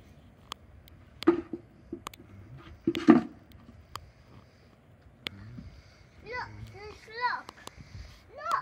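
Children's voices calling out, with two loud short shouts and then a run of rising-and-falling chattering calls near the end. Sharp clicks are scattered throughout.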